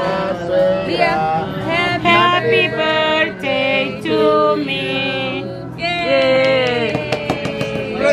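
Several people singing a song together, with long held notes.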